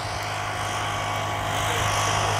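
A steady mechanical drone: an unchanging low hum with a fainter, higher steady whine over outdoor background noise.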